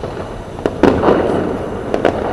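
Distant fireworks going off over a city: a steady crackle of bursts, with a sharp bang a little under a second in that rings on afterwards, and another bang at the very end.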